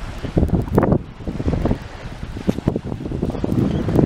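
Wind buffeting the microphone in uneven gusts, loudest in the low rumble, over small waves lapping at the shore.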